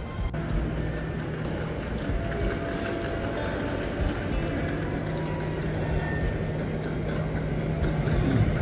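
Steady low mechanical hum from aircraft and ground equipment on an airport apron, with music playing over it.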